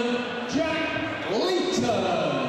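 A man announcing through a microphone and PA system, with long, drawn-out words that rise and fall in pitch.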